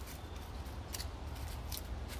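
Faint scattered light clicks and rustles of steps on wooden boards and dry leaves, over a low steady rumble.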